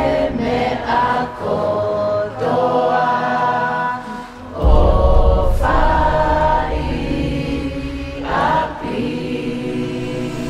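Soundtrack music of a choir singing long held notes. About halfway through, a deep low bass sound comes in suddenly under the voices.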